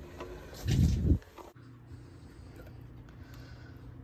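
Manual can opener cranked around the rim of a large #10 steel can, giving a short rough grinding burst about a second in; after that only a faint steady hum.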